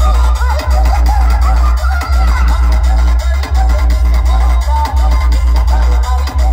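Electronic dance music played very loud through a large DJ sound system, dominated by heavy, steady bass, with a sliding, wavering melody line above it.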